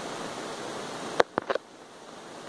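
A steady rushing hiss that cuts out suddenly about a second in, with three quick sharp knocks as the phone is handled and moved.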